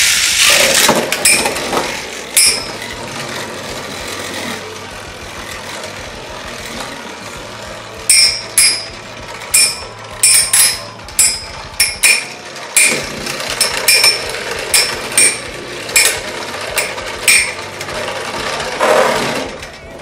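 Two metal battle tops spinning in a plastic stadium with a steady whir, then clashing again and again: about a dozen sharp metallic clacks from about eight seconds in, until one top is knocked over near the end.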